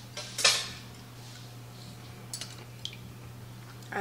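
A short, sharp clatter of a dish or utensil set down on the kitchen counter about half a second in, then a couple of faint clicks, over a steady low hum.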